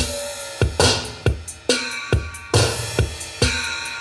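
Acoustic drum kit played in a steady beat: bass drum hits and cymbal crashes, about two strokes a second.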